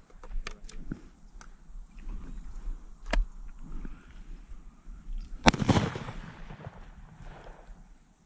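A shotgun shot about five and a half seconds in, with a short echo after it. A fainter sharp crack comes about three seconds in, and a few light clicks in the first second and a half.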